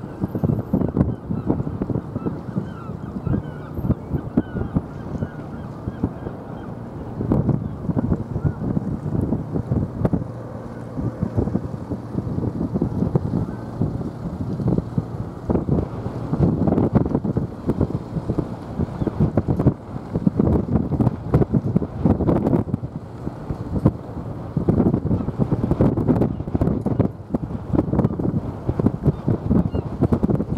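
Wind buffeting the microphone: a loud rumbling noise that swells and fades in gusts every few seconds.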